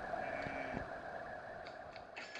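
Quiet stretch of a cartoon soundtrack played on a television and re-recorded off the set: a steady hiss, with a faint short low tone about half a second in.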